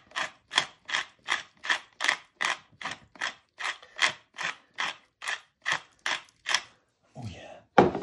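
Hand-twisted pepper mill grinding mixed peppercorns: a regular crunching grind about two and a half strokes a second that stops about seven seconds in. A sharp knock follows near the end.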